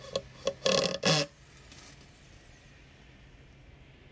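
Four quick knocks and scrapes of OSB boards bumping and rubbing against each other as they are fitted by hand, all within the first second or so, the third and fourth longer and the loudest.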